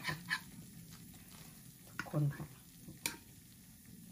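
A metal fork scraping melted cheese out of a small raclette pan onto a plate, with one sharp metal clink about three seconds in.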